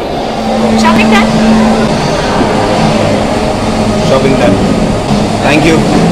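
Indistinct voices talking over steady, loud background noise.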